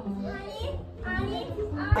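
Children's voices and chatter in the background, with music playing.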